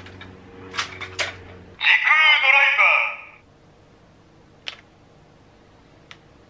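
Bandai DX Ziku-Driver toy transformation belt being fastened: a couple of clicks, then its electronic voice call through the small built-in speaker for about a second and a half, followed by a single click.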